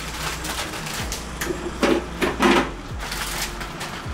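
Rice-cake packaging rustling and light knocks of the cakes being handled and laid down on a counter tray, with many short clicks and crackles.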